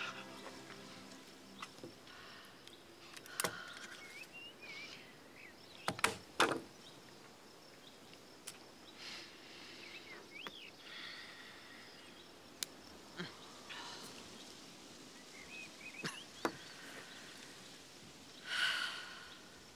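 Quiet garden ambience with a few short bird chirps and scattered sharp knocks and clicks; the loudest two knocks come about six seconds in.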